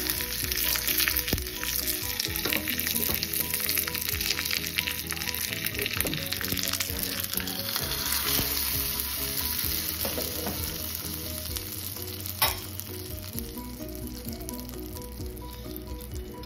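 Ghee tempering of mustard seeds, cumin, dried red chillies and curry leaves sizzling and crackling hard in a small pan, easing off somewhat in the last few seconds. A single sharp click sounds about twelve seconds in.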